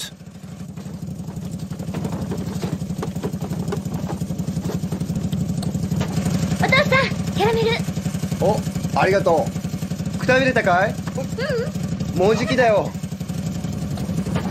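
The small putt-putt ("pot-pot") engine of a tiny truck running steadily, fading up over the first couple of seconds. From about seven seconds in, brief high children's voices come over it several times.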